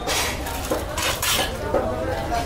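Steel fish-cutting knife scraping and clinking: two rasping strokes about a second apart.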